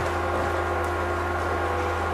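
Steady electrical hum with room tone, and a faint tick a little under a second in.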